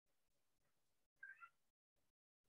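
Near silence: faint hiss that cuts in and out, with one brief, faint, high-pitched call about a second in.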